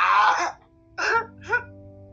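A boy crying in an emotional outburst: a long wailing sob that breaks off about half a second in, then two short gasping sobs.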